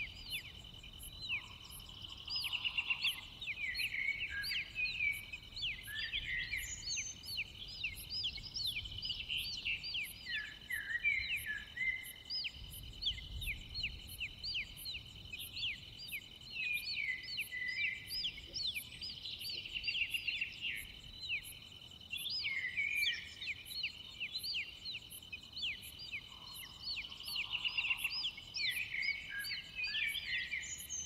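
Nature ambience of insects and birds: a steady high trill of insects with a regular faint chirp repeating a little under twice a second, and many quick bird chirps over it throughout.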